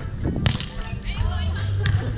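A sharp slap as a hand strikes a beach volleyball on the serve, about half a second in, and a second, fainter smack near the end as the ball is hit again.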